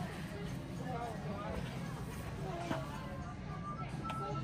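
Quiet outdoor ambience of faint, distant voices and background music, with one faint click a little after halfway.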